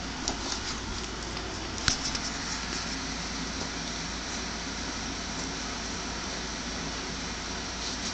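Steady low background hiss of room noise, with a few faint clicks and one sharp tap about two seconds in.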